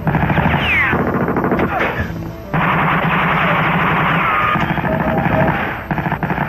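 Automatic rifle fire in rapid bursts: a burst of about a second at the start, softer firing, then a longer burst of about three seconds from about two and a half seconds in.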